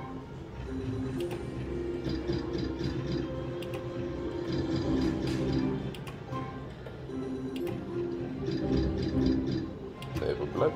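Book of Ra Classic slot machine's free-game tune playing as the reels spin through several free spins, with short clicks as the reels stop.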